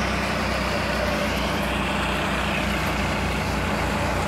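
Jai Gurudev paddy thresher, driven by a New Holland 3600-2 tractor's diesel engine, running steadily while sheaves of wet paddy are fed into it: a constant engine hum under the noise of the threshing drum.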